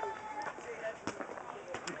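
Quiet outdoor background with a few faint, scattered clicks and a short faint tone near the middle.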